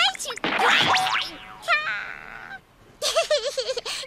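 A cartoon tumble sound effect: a loud noisy crash with falling whistling sweeps about half a second in, fading out by halfway, with a short high cry in the middle. A young girl's high cartoon voice comes back in the last second.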